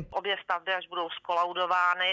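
A woman talking over a telephone line, the voice thin with no bass.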